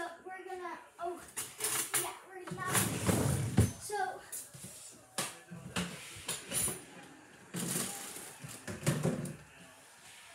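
Scattered knocks and light clatter of food packages and items being handled and moved on a kitchen pantry shelf, with brief snatches of voice in between.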